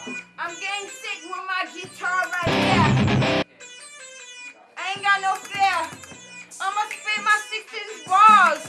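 Acoustic guitar played along with a rapping, shouting voice. A loud shout of "Turn!" about two seconds in, lasting about a second, is the loudest sound.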